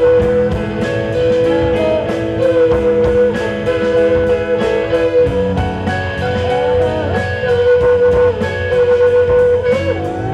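Live rock band playing an instrumental passage: electric guitar, bass and drums, with long held lead notes that waver in pitch over a steady drum beat.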